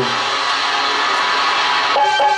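Live music of a jatra stage band: a loud, dense, sustained wash of sound with little clear melody.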